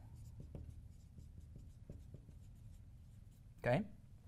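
Dry-erase marker writing a word on a whiteboard: a quick run of faint, short strokes.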